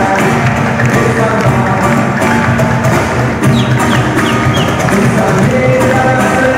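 Live music from a band playing with percussion, steady and full throughout.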